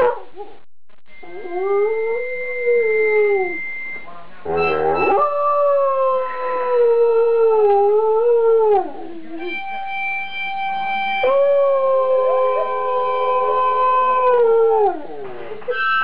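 An Afghan hound howling along to a harmonica: three long howls that bend up and down in pitch, over held harmonica chords.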